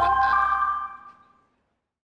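A closing musical chime: a few bell-like tones struck together at the start ring out and fade away over about a second.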